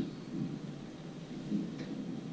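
Handheld microphone handling noise as the mic is passed from one speaker to the next: a faint, uneven low rumble with a light click near the end.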